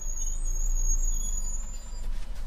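Orion VII CNG transit bus standing with its engine running low underneath, and a steady high-pitched squeal that sags slightly in pitch and cuts off near the end.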